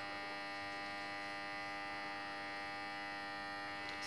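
A faint, steady electrical hum with a buzzing edge, unchanging throughout.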